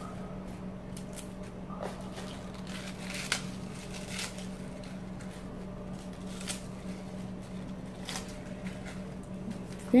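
Crisp lettuce leaves torn by hand and dropped into a glass bowl: soft rustling with scattered light crackles of the leaves snapping, over a steady low hum.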